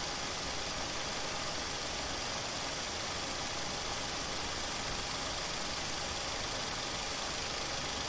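Steady background hiss and hum of the recording, with no distinct events.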